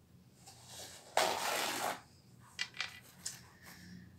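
Paper towels handled close to the microphone: a rough rustle about a second in that lasts most of a second, then a few light knocks.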